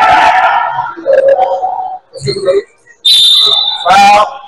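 A referee's whistle blown once near the end, a steady shrill tone lasting about a second. It follows loud shouting voices in the first second.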